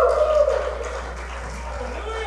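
A voice holding a drawn-out note with a wavering pitch trails off in the first half-second. Then only the hall's echo and a steady low hum are left.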